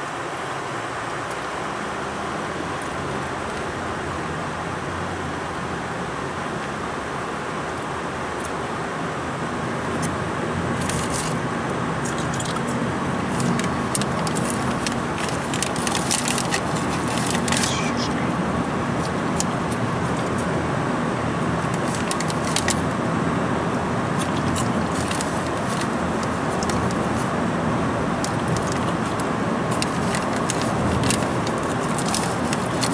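Car cabin noise while driving: steady engine and tyre noise that gets louder about ten seconds in as the car speeds up, with scattered small clicks.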